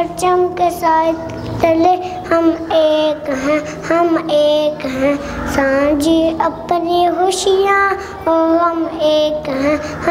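Children singing a slow melody of held notes that slide from one to the next, with a faint low steady tone underneath.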